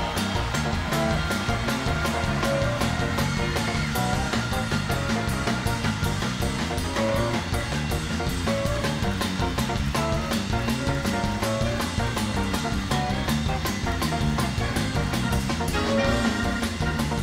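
Large blues band (guitars, bass, drums, keyboards and horns) playing an upbeat instrumental walk-on theme with a steady drum beat, over a cheering, clapping crowd.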